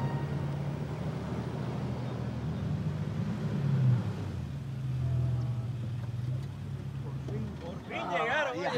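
Engines of SUVs, among them an Isuzu, driving slowly past one after another on a dirt track: a low running hum that swells and rises in pitch about four seconds in as the next vehicle comes by.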